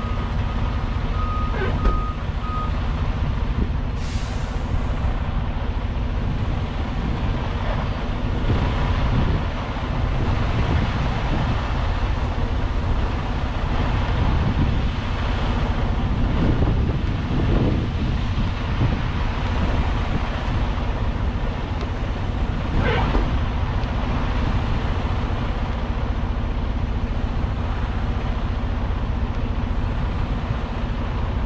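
Semi tractor's diesel engine idling steadily, with a short steady beep about a second in and a brief hiss about four seconds in.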